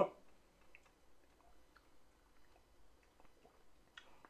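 Faint mouth and lip sounds from sipping and tasting whiskey: scattered small wet clicks, barely above room tone.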